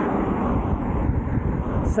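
Passing car traffic on the road alongside, a steady rush of tyre and road noise, mixed with wind buffeting the microphone of the moving rider.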